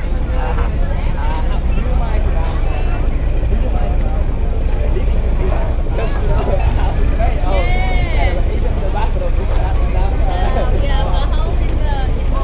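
Chatter of many passengers over a steady low rumble, the engine of a docked river water bus running at idle. One high-pitched voice stands out about eight seconds in.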